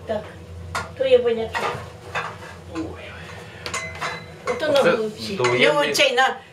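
Clay and crockery pots clattering and knocking together as they are moved about and lifted out of a low kitchen cupboard, with many sharp clinks.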